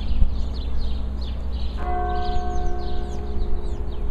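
A monastery church bell struck once almost two seconds in, ringing on with several clear overtones as it slowly fades, over a steady low rumble and short high chirps.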